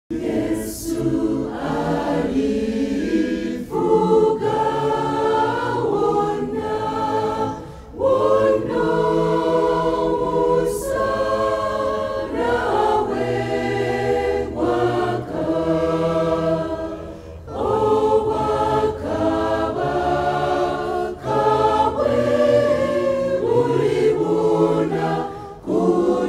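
Mixed church choir of women and men singing a gospel song, in phrases of about four to five seconds with brief breaks between them.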